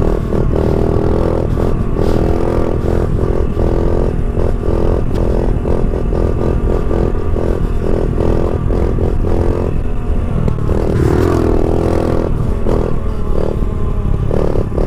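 Honda CRF70 pit bike's small single-cylinder four-stroke engine running hard under throttle in a wheelie, holding a fairly steady high note that wavers in pitch about eleven seconds in.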